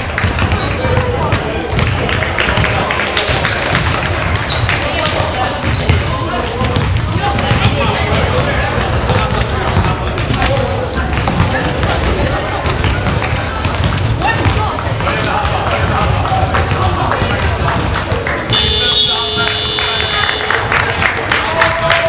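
Indoor basketball game: a ball bouncing on a wooden hall floor, shoe squeaks and indistinct calls from players and onlookers in a reverberant sports hall. Near the end a steady high-pitched signal sounds for about two seconds.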